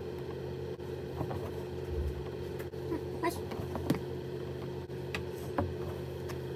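Steady low hum in the background, with a few faint ticks and scratches of a needle and thread being pulled through fabric stretched in an embroidery hoop.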